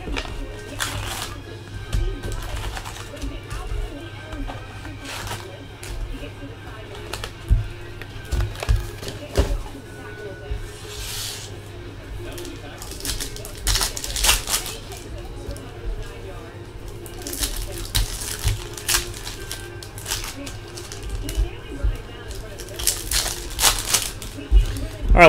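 Foil baseball card packs being torn open by hand, the wrappers crinkling and crackling in short irregular spells, with cards shuffled between them. A steady low hum and faint background music run underneath.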